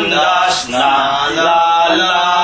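Congregation singing a Tagalog hymn in slow, held notes, with a short break about half a second in.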